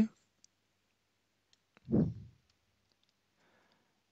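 A few faint computer mouse clicks as text is selected and copied, with a short vocal sound, falling in pitch, about two seconds in.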